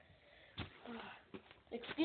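Faint background voices of a young child, with a single sharp tap about half a second in. A louder voice starts near the end.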